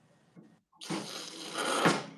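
Hot water spout of a La Spaziale two-group commercial espresso machine dispensing a rushing stream of hot water, starting about a second in and cutting off near the end.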